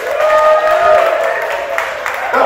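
Audience applause, with a brief steady high tone over it in the first second.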